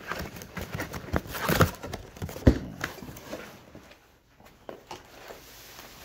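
Cardboard shipping box being torn open by hand: ripping cardboard and crinkling packing paper, with sharp knocks, the loudest about two and a half seconds in, and quieter handling after the middle.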